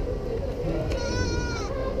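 A goat bleating once, a single drawn-out call about a second in, over steady background noise.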